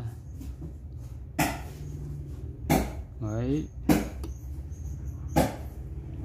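Metal tweezers clicking sharply against the metal tabs of a small slide-type record switch as they are bent open to take the worn switch apart: four separate clicks, a little over a second apart, over a low steady hum.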